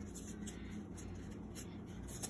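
Child's plastic safety scissors snipping construction paper: a few faint, short snips with light paper rustle.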